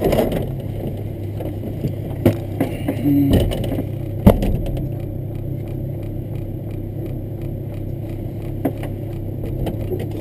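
Rally car engine idling steadily while the car stands still, heard inside the cabin, with scattered clicks and rattles and one sharp knock about four seconds in.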